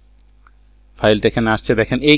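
Two faint computer mouse clicks over a low electrical hum, then a man starts talking about a second in.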